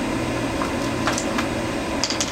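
Steady background hum with a few faint, short clicks from small parts of an e-cigarette atomizer being handled.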